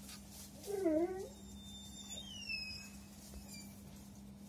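A domestic turkey gives one short call about a second in, dipping and then rising in pitch, followed by a few thin, high whistling notes that fall in pitch, over a steady low hum.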